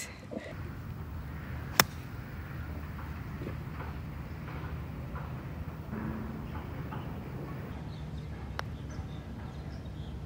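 A golf club striking a ball once about two seconds in, a single sharp crack over a steady low outdoor rumble; a much fainter click follows near the end.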